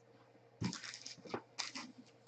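Trading cards being handled and set down on a tabletop: a soft thump about half a second in, then a few short rustles and clicks.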